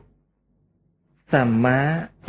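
About a second of silence, then a man's voice begins reciting the Pali word "sammā", its first syllable long and drawn out.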